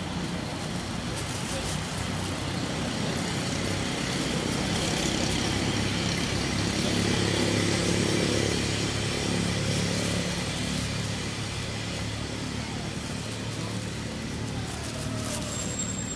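A motor vehicle's engine hum that swells to its loudest about halfway through and then fades, as of a vehicle passing.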